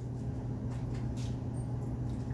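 Liquor poured from a bottle into a small shot glass, with faint, soft splashing over a steady low hum.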